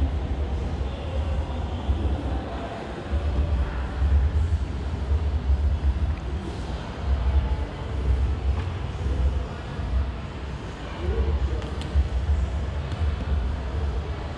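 Low, uneven rumble on a handheld camera's microphone, surging and easing as the camera is carried and moved, over a faint background hiss.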